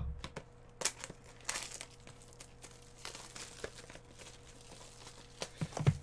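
Plastic shrink wrap crinkling and tearing as it is pulled off a sealed trading-card box, in a string of short, irregular crackly rustles.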